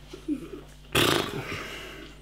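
A man's short low voiced sound, then a sudden loud breathy exhale about a second in that fades away over half a second.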